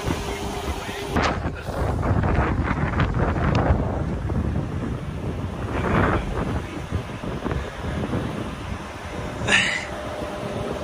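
Wind buffeting a handheld phone's microphone in a steady low rumble, with a few short clicks early on and a brief louder sound near the end.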